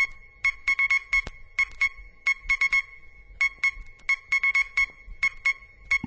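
Electronic background music in a break without drums: a synthesizer plays short, same-pitched high beeps in quick irregular clusters, like Morse code.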